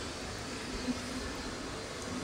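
Steady background hum and hiss of running machinery or ventilation, with no distinct events.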